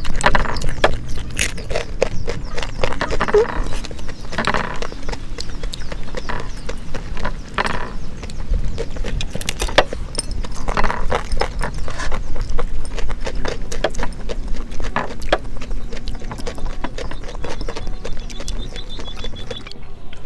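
Close-miked eating sounds: chewing and lip-smacking as rice and young jackfruit curry are eaten by hand, a dense, irregular stream of wet clicks and smacks.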